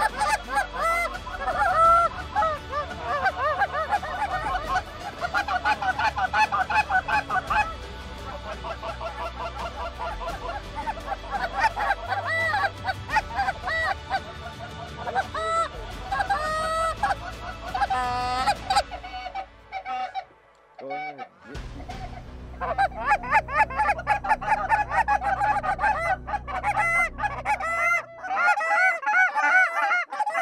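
A flock of Canada geese honking, many short calls overlapping, with a brief lull about two-thirds of the way through before the honking resumes.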